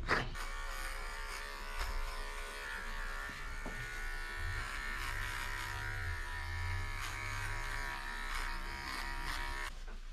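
Cordless pet trimmer buzzing steadily as it shaves the fur on the underside of a dog's paw, cutting off shortly before the end.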